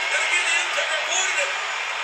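Audio of a televised wrestling match: steady noise from a large arena crowd, with indistinct voices mixed in.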